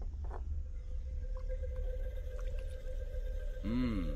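A low steady rumble with a held tone, the kind of drone laid under a tense film scene, and a short pitched sound that rises and falls near the end.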